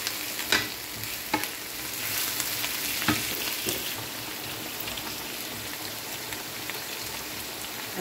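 Onions and tuna sizzling in oil in a nonstick frying pan, a steady hiss, with a few sharp knocks of the wooden spoon against the pan in the first four seconds.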